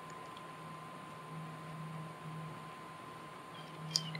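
Quiet background with a faint steady hum, a few tiny ticks early on and a small click just before the end.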